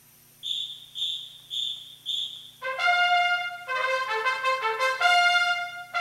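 Four short, high, evenly spaced whistle blasts count off the tempo, then a full marching band's brass section comes in loud at about two and a half seconds, playing sustained chords that change every second or so.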